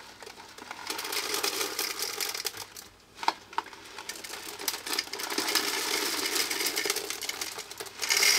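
Salt being poured over the ice cubes in an ice cream maker's bucket: a dense rattle of small grains landing on ice. It pauses briefly about three seconds in, with a couple of single clicks, then runs on.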